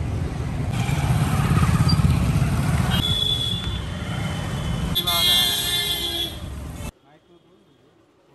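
Street traffic noise of cars and motorcycles passing, with a vehicle horn honking about five seconds in. The sound cuts off suddenly near the end.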